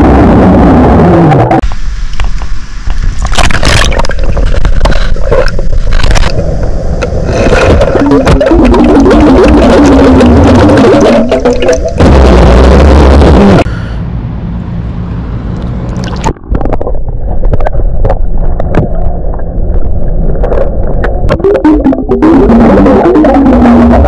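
A man burping underwater from swallowed carbonated soda, picked up by a submerged microphone: long, very loud, distorted burps with a wavering, falling pitch, and bubbles rushing out of his mouth. About two-thirds of the way through there is a quieter break while he drinks from the bottle, then the underwater burping resumes.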